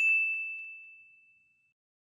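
A single high, bell-like notification ding from a subscribe-button sound effect, rung as the button flips to 'subscribed'. It rings out and fades away over about a second and a half.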